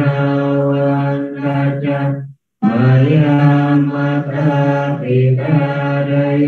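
Buddhist paritta chanting in Pali: low, steady monotone recitation, with a short breath pause about two and a half seconds in.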